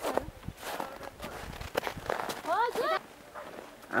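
Footsteps crunching through snow, with a person's voice giving a few short rising calls about two and a half seconds in.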